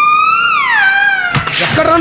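A long, high-pitched wailing cry that holds, rises slightly, then slides down in pitch and levels off, followed near the end by shorter wavering cries.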